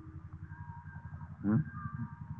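A pause in the speech filled by the low, evenly pulsing buzz of the recording's background, with faint steady high tones over it. A short vocal sound comes about one and a half seconds in.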